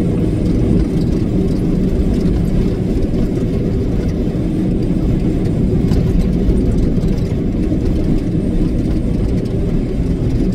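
Semi truck's diesel engine and road noise heard inside the cab while cruising at highway speed: a steady low drone.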